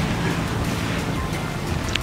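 Steady rushing noise of wind and water at the shore, with background music underneath.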